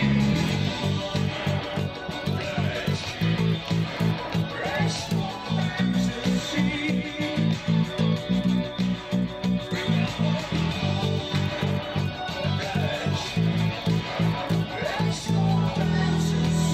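Four-string electric bass guitar playing a driving line of short repeated notes, alternating the open A string and the A string's second fret in a steady pulse.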